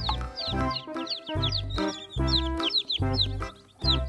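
Background music with a steady bass beat, over domestic chicks peeping: many short, high, falling cheeps, several a second.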